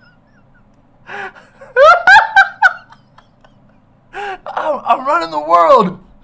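A woman's wordless laughing and gasping. It comes in three bursts, the second high and wavering. The last is a long, wobbling strained cry that falls in pitch near the end.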